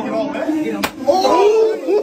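A single sharp open-hand slap against a football helmet a little under a second in, amid a crowd of young men shouting and whooping.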